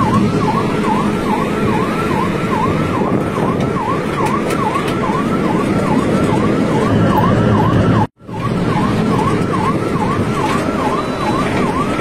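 Ambulance siren sounding a fast yelp, its pitch swooping up and down about two and a half times a second, heard from inside the ambulance over its engine and road rumble. It cuts out briefly about eight seconds in.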